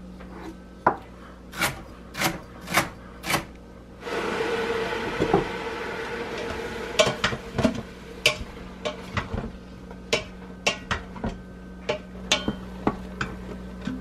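A wooden spoon knocking and scraping against the stainless steel inner pot of an Instant Pot as sautéing mushrooms are stirred. For a few seconds in the middle there is a steady sizzling hiss.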